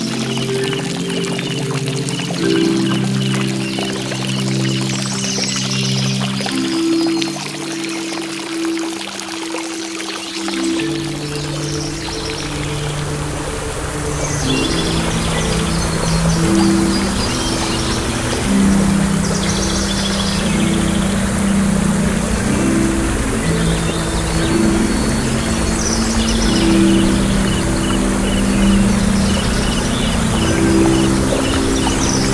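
Slow piano notes held long over the steady rush of a waterfall. Crickets chirp in a pulsing trill through the first half, and short bird calls come in now and then. The water grows fuller and deeper about a third of the way in.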